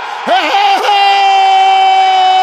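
TV football commentator's excited goal shout: a quick rising and falling cry, then about a second in one long, high held note.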